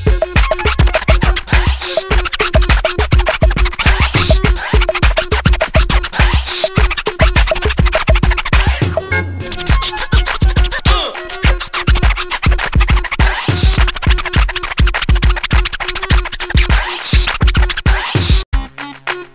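DJ turntable scratching on vinyl over a hip-hop beat: a solo scratch routine of fast, dense scratches with a steady kick drum, briefly dropping out a little past halfway.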